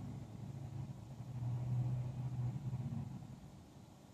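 A motor vehicle's low engine rumble that swells to a peak about two seconds in and then fades, as of a car driving past on the street.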